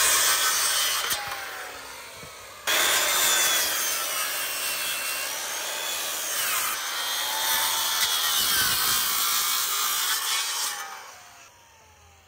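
Porter-Cable corded circular saw cutting pine boards into pointed stakes: a short cut, a pause of a second or two, then a long cut of about eight seconds, the motor's pitch sagging and rising under load, winding down near the end.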